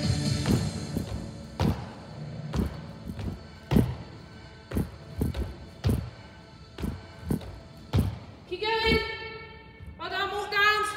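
Burpees on an exercise mat over a wooden floor: irregular thuds, roughly one a second, as the feet land from the jumps and the hands and feet hit the mat, over background music. A short voice sound comes near the end.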